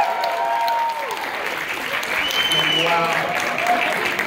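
A crowd applauding and calling out as the dance music cuts off about a second in.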